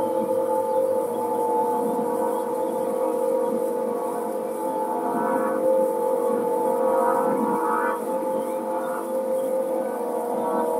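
Aeolian wind harp tuned to A=432 Hz, its strings sounding a steady drone as the wind plays them, with higher overtones swelling and fading a few times.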